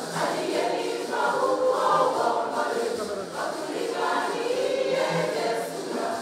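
A women's choir singing together in several overlapping voices.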